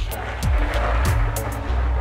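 Plush toy unicorn's small wheels rolling across a wooden floor as it is pulled along on its leash, a steady rolling rumble, with background music underneath.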